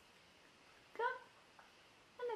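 A four-week-old kitten mewing once, a single short high call about a second in.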